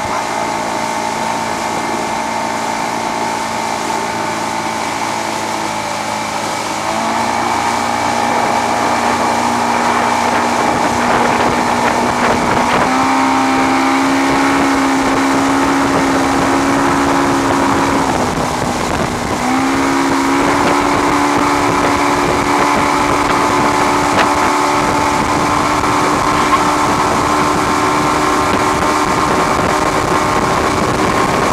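Motorboat engine running under load while towing, over the rush of wind and water. Its pitch steps up about seven seconds in and again about thirteen seconds in, drops briefly near the middle, then picks back up.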